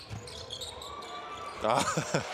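Basketball bouncing on the hardwood court during live play, with a brief thin squeak around the middle; a voice comes in near the end.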